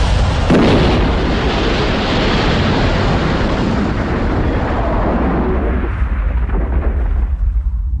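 Dramatised sound effect of an airliner crashing into swamp water: a loud explosive impact about half a second in, then a long rumble. The noise thins over the last couple of seconds, leaving a low rumble.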